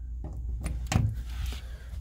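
A two-prong power plug pushed into a wall outlet: a couple of light clicks and a soft thud about a second in, over a low steady rumble.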